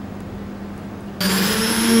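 Cordless drill-driver motor starting abruptly a little over a second in and running with a steady high whine as its bit goes into the board.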